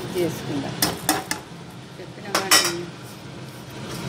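A metal spoon clinking against a kadai holding oil and cumin seeds: three quick clinks about a second in and two more a little after halfway, over a steady low hum.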